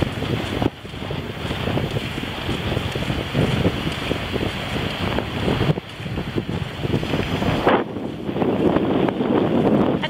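Wind buffeting the camera's microphone: a loud, gusting rush with a couple of brief lulls.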